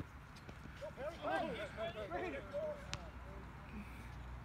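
Faint voices of basketball players calling to each other during a game, with one sharp knock about three seconds in.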